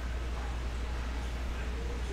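A steady low hum under faint handling of a stack of trading cards being sorted through by hand.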